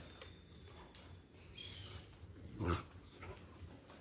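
Two puppies play-fighting, faint throughout, with one short, louder dog vocal sound about two-thirds of the way in.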